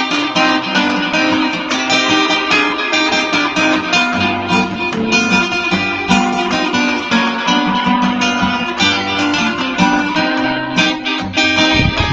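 Steel-string acoustic guitar playing an instrumental medley of Filipino folk songs, with a quick steady run of plucked notes over chords.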